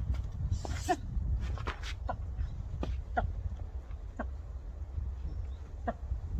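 Short animal calls repeated about seven times at uneven intervals, each brief and dropping slightly in pitch, over a steady low rumble.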